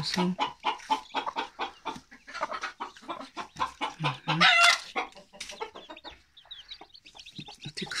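Broody hen clucking in a run of short calls close by, with one loud, higher call about halfway through. Faint, high, falling peeps of newly hatched chicks come near the end.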